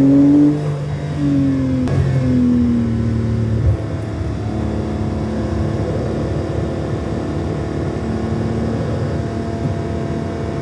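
Porsche 911 Carrera 4 GTS's twin-turbo flat-six accelerating, its note rising and breaking twice at gear changes, then falling away. From about four seconds in it runs at a steady, even pitch at constant speed.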